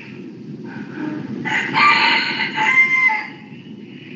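One long animal call of about two seconds, starting about a second and a half in, over a steady low background noise.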